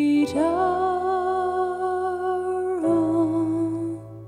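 Slow hymn singing: a voice holds one long, wavering note over soft accompaniment, moves to a lower note, and the music fades near the end.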